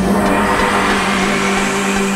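Eurodance track: a single held synth note under a loud whooshing noise sweep that slowly rises in pitch.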